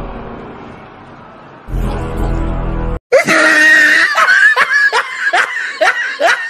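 Dramatic background music that dips and swells again, then cuts off abruptly about halfway through. A young man's loud, high-pitched laughter follows in rapid bursts, each breaking off and starting again.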